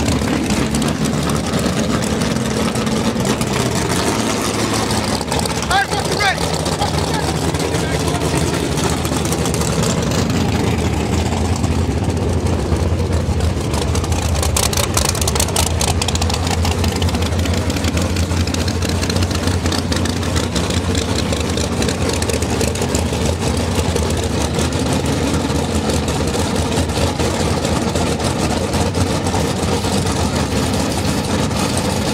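Drag-race car engines idling with a steady low rumble, crowd voices over it.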